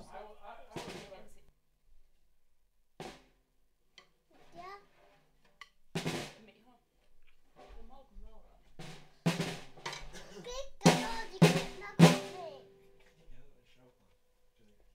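A drum struck in single hits at irregular intervals: a few scattered hits, then a run of harder hits about nine to twelve seconds in, each ringing briefly. Quiet voices come between the hits.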